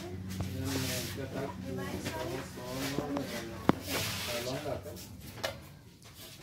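A voice talking, with a steady low hum underneath and one sharp click a little past halfway.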